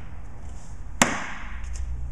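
A single sharp slash of a double-edged 1095 high-carbon steel knife blade striking and cutting into a ridged plastic gallon jug filled with Jell-O, about a second in.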